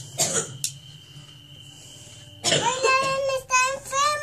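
A short cough just after the start, then a faint steady high tone, and from about two and a half seconds in a child's voice in held, sing-song vowels.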